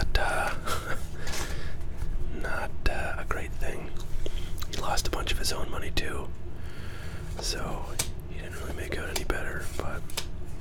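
Close, soft whispering into the microphone, broken by frequent short clicks from gum chewing and from baseball cards being flipped in the hands.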